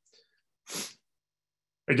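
A short, quiet intake of breath by a man close to his microphone, a single breathy hiss without pitch lasting about a third of a second.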